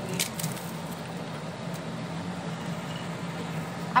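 A steel spatula working crushed papdi and chaat on a cast-iron tawa: a few short, crisp clicks and scrapes near the start, over a steady low hum.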